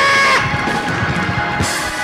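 A man's held, shouted note into a microphone cuts off about half a second in, leaving live gospel church band music: sustained chords with drum hits underneath.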